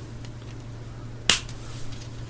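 A single sharp plastic click about a second and a quarter in, as a hand handles a plastic miniature sprue, over a faint steady low hum.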